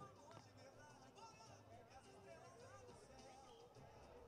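Faint voices with music in the background.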